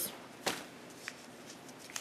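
A folded paper slip being handled and unfolded, a faint rustle with one sharper crackle about half a second in and a couple of soft ticks later.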